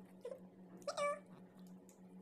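A green parakeet gives one short, high call about a second in, over a steady low hum.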